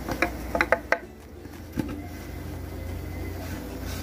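Handling sounds of a small plastic tube against a wooden hive box: several sharp light clicks and taps in the first second and one more near the two-second mark, over a steady low hum.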